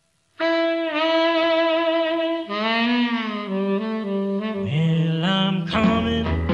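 A brief silence between tracks, then the opening of a 1950s rhythm-and-blues record: a saxophone plays a run of long held notes. The drums and band come in just before the end.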